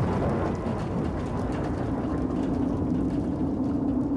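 Soundtrack sound design: a steady, dense rumbling noise under a sustained low drone note that firms up about a second in and holds.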